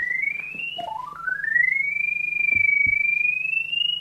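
Ridgid NaviTrack Scout locator's audio tone: a single electronic pitch that climbs in small steps, drops back about a second in, then climbs again and holds high with a slight waver. The rising pitch signals a stronger signal as the locator closes in on the sonde behind the drain camera head.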